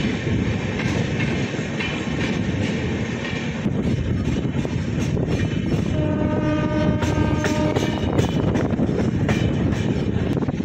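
Indian Railways express coach running at speed over the track, a steady rumble with wheel clicks over the rail joints, heard from the open coach doorway. About six seconds in, a train horn sounds one held note for about two seconds.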